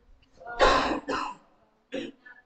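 A man coughing: one strong cough about half a second in, followed by a shorter, weaker one.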